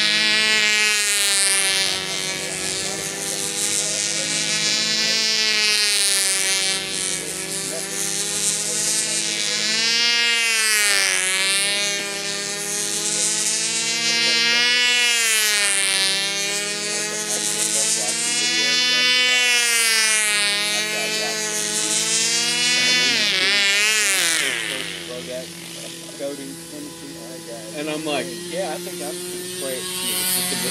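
Small two-stroke glow engine of a control-line model plane at full throttle in flight, a high buzzing whine whose pitch and loudness rise and fall in a slow cycle every four to five seconds as the plane circles. About 24 seconds in, the pitch drops sharply and the engine quits: it has run out of fuel before the pattern is finished.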